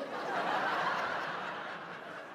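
Theatre audience laughing, the laugh swelling over the first second and then slowly dying away.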